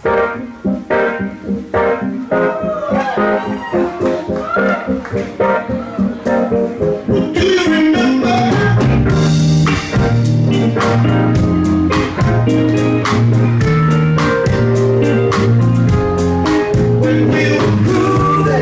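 Live band playing a relaxed groove on keyboard and guitars with drums. It starts sparse, then fills out and gets louder with a steady bass line about eight seconds in.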